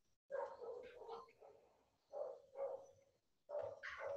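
A dog barking in a series of short barks, heard faintly over a video call.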